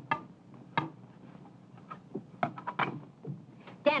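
A phonograph being set up by hand: a scattering of sharp clicks and knocks, a quick run of them a little past halfway, over a steady low hum in the old soundtrack.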